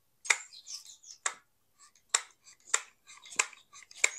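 A HART 20V cordless hot glue gun dabbing dots of glue onto a polystyrene foam strip, with about five short, sharp clicks spaced roughly a second apart.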